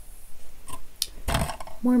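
Two light clicks and a short rush of noise, small handling sounds at a desk, then a woman's voice begins near the end.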